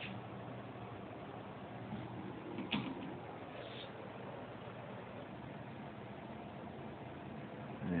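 Quiet background with a faint low hum and a soft click or two: no engine running and no clear event.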